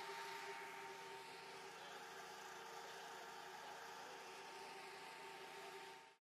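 Near silence: a faint, steady hiss with a thin, steady hum underneath, easing slightly quieter.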